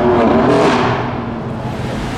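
BMW M4's twin-turbo straight-six accelerating hard through a tunnel, echoing, loudest in the first second and then fading away.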